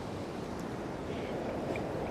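Steady wash of sea surf breaking on a rocky shore, with wind on the microphone.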